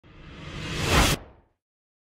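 A whoosh sound effect for an intro logo reveal: it swells steadily for about a second, then cuts off abruptly with a short fading tail.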